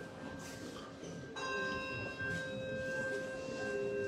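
A bell struck about a third of the way in, ringing on with several clear overtones and struck again shortly after, over the lingering ring of an earlier stroke.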